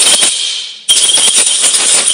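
Compressed-air blow gun blasting into a threaded hole, blowing out the oil left from fitting a thread-repair insert. One burst of hiss tails off in the first half second, then a second burst starts about a second in, with a thin whistle in the hiss.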